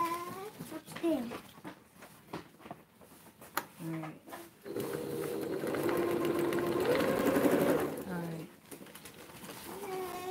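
Electric sewing machine stitching ribbon down: a short burst about four seconds in, then a steady run of about three seconds, then one more brief burst.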